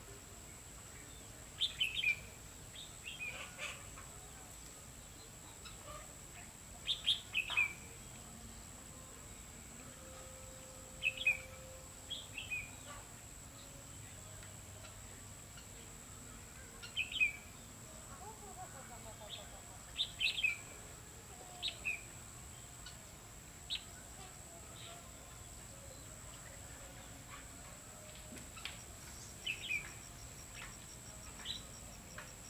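Red-whiskered bulbul singing short phrases of a few quick, falling notes, repeated every few seconds with pauses between.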